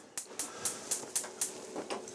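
Gas stove's electric spark igniter clicking rapidly, about four sharp clicks a second, as a burner is lit to boil a kettle.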